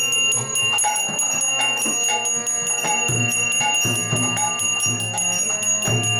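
A hand bell rung continuously in quick, even strokes, its high ringing tones held throughout, as in arati worship. Underneath it runs kirtan music with low drum beats.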